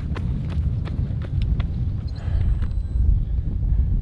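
Running footsteps slapping on asphalt about three times a second, slowing to a stop after about a second and a half, over a steady low rumble of wind on the microphone.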